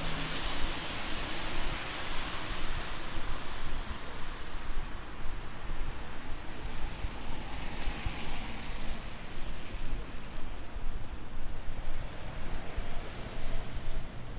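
Street traffic on wet roads: a steady low rumble with the hiss of car tyres on wet asphalt swelling twice as vehicles pass, once at the start and again about eight seconds in.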